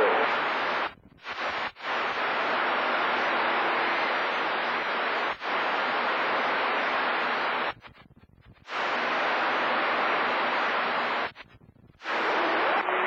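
CB radio receiver hiss on channel 28 during skip, a steady rush of static between voice transmissions. It cuts out abruptly a couple of times near the start, again for about a second near the eight-second mark, and once more just before the end.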